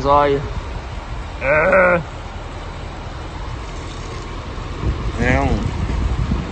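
A man's voice making three short, wordless, wavering vocal sounds, about a second and a half and then three seconds apart, over a steady low background rumble.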